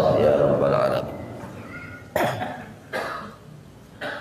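A man coughs twice into a handheld microphone, a short sharp cough about two seconds in and a second one about a second later, each fading quickly.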